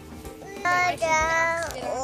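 A high, child-like voice singing long held notes from about half a second in, over background music.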